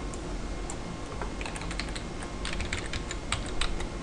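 Typing on a computer keyboard: a quick run of key clicks that begins about a second in and continues to near the end.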